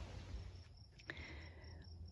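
Faint cricket-like insect trill: a thin, steady high tone over quiet outdoor ambience, with a single click about a second in.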